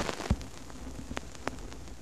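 Surface noise of a vinyl record's lead-in groove: a steady crackly hiss broken by a few sharp pops.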